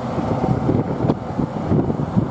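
Wind buffeting the microphone in uneven low gusts, over a police Lada Samara hatchback driving off from the roadside.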